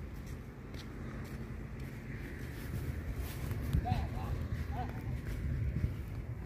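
Heavy cargo truck's diesel engine running with a low rumble as the truck drives slowly past.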